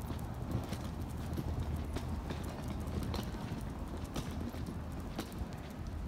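Footsteps on a concrete sidewalk, a sharp click roughly every half second, over a steady low city rumble.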